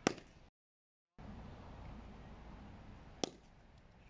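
Cricket bat striking a cricket ball in a drive: one sharp knock right at the start and another about three seconds in, over faint outdoor hiss. The sound cuts out completely for a moment about half a second in.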